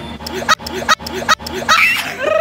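Loud kiss smacks close to the microphone, four in quick succession about 0.4 s apart, each with a short hum. Near the end a woman gives a brief high squeal.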